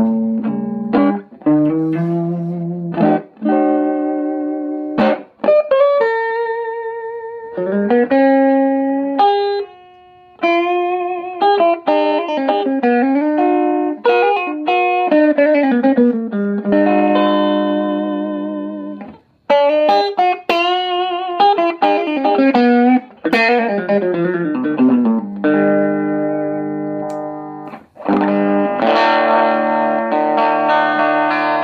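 Electric guitar, a 1967 Höfner Super Beetle, played through a scratch-built single-ended valve amp cloned from the Valco Supro Spectator 510 circuit (6SL7 preamp into a 6V6 output) and housed in an old record-player cabinet. He strums chords and plays single-note lines, some notes with vibrato, pausing briefly twice.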